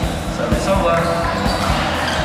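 Indoor badminton hall ambience: repeated short thuds of footsteps and shots from the courts, with voices in the background.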